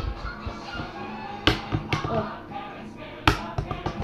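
A part-filled plastic water bottle hitting a wooden tabletop twice, about two seconds apart, as it is flipped. Background music plays underneath.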